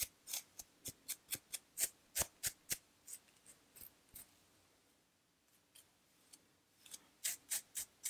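Fingernails scratching a dry, flaky scalp with dandruff: quick, rasping strokes about three or four a second. They fade and pause around the middle, then come back as a short run near the end.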